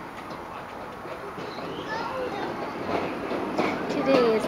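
Steady outdoor background rumble with faint distant voices.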